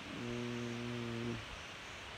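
A man's voice humming one steady low note for about a second and a quarter.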